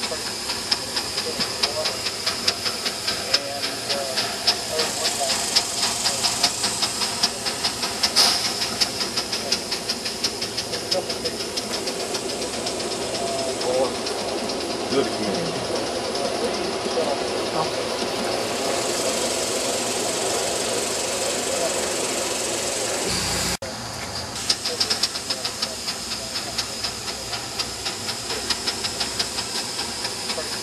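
Live-steam model of a Great Northern S-2 locomotive (Aster, gauge 1) running past with a fast, even beat of exhaust chuffs over a steady hiss of steam. In the middle the chuffing thins out while the passenger cars roll by, then comes back strongly as the locomotive passes again.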